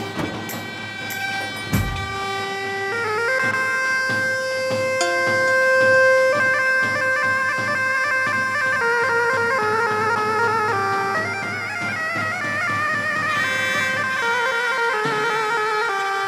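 Folk dance music: a davul bass drum beating in the first two seconds, then a loud, reedy melody that steps from note to note and wavers in pitch in the later part.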